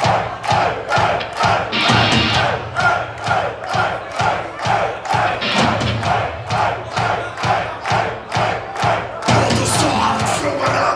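Live metal band pounding out a steady beat of about two hits a second, drums and guitars struck together, with the crowd shouting along in time on each hit.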